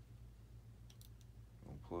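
A few faint, small plastic clicks, about a second in, as a servo-lead connector and an RC receiver are handled between the fingers, over a low steady hum.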